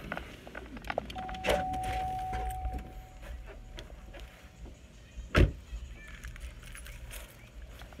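Getting out of a truck: handling noise and clicks, a steady electronic warning tone held for about three seconds, and one loud knock about five seconds in as the door shuts.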